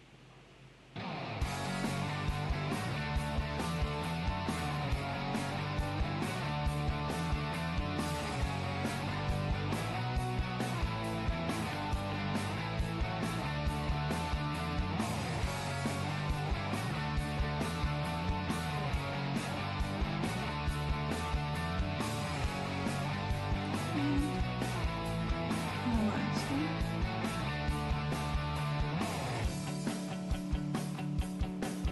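Background music with a steady beat, starting suddenly about a second in after near silence.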